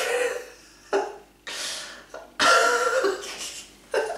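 A man's wordless vocal noises, burp- or cough-like: four rough bursts, the longest and loudest in the second half.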